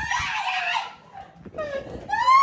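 Girls' excited voices, squealing and laughing in bursts, dropping away briefly about a second in before picking up again.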